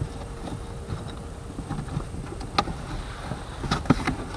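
A cardboard box being handled, giving a few short sharp knocks and rustles (one about two and a half seconds in, a few more near the end), over a steady low rumble.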